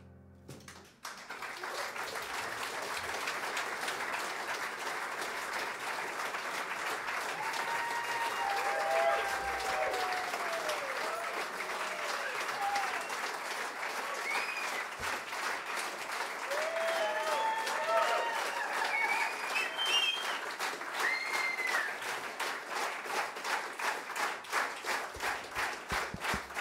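Audience applause breaking out about a second in, just as the last piano notes die away, with voices calling out in approval over it; near the end the clapping thins into separate claps.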